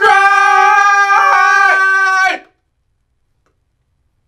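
A man's voice singing one long held note, which cuts off about two and a half seconds in.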